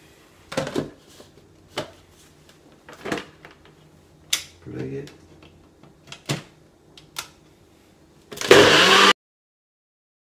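Plastic NutriBullet cup clicking and knocking as it is handled and set onto the base, then the NutriBullet blender motor starts loud near the end and cuts off abruptly after under a second.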